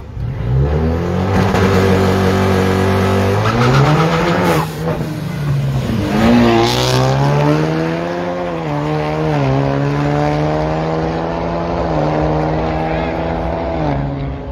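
Small-tire drag cars launching off the line and accelerating hard down the strip, their engines climbing in pitch and dropping back at each of several gear changes.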